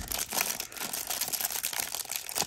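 Clear plastic wrapper around a stack of trading cards crinkling steadily as it is picked at and pulled open by hand.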